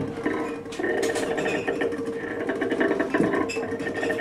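Free-improvised double bass and drum kit: a held tone under rapid rattling and scraping textures, with no saxophone.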